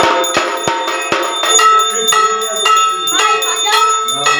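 Brass puja hand bell ringing continuously with quick repeated strikes, its ringing tones overlapping. About halfway in, a wavering higher sound joins it.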